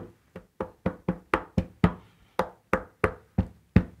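A rapid run of about a dozen sharp wooden knocks, three to four a second with a brief pause near the middle, each leaving a short hollow ring.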